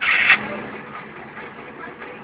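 Steady engine and road noise inside the cab of a moving Volvo FH12 420 truck, whose 12-litre inline-six diesel runs under light load. It opens with a brief loud burst of noise lasting about a third of a second.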